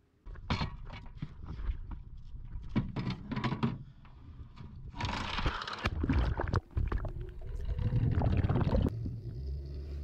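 Water bubbling and rushing around an underwater camera, with scattered clicks and knocks at first and a louder rush with a low rumble from about halfway through.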